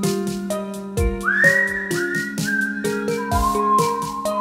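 Human whistling carrying a slow melody over keyboard chords and a steady drum loop. About a second in the whistle swoops up to a held high note, then steps down through lower notes.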